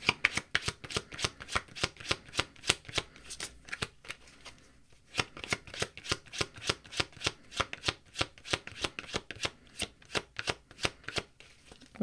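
A tarot deck being shuffled by hand: a quick run of soft card slaps, about five a second, with a short pause about four seconds in before the shuffling resumes.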